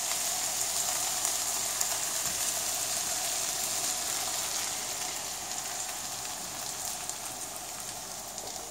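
Hot frying pan of bacon and vegetables sizzling as beaten eggs are poured slowly into it, a steady hiss that gradually fades.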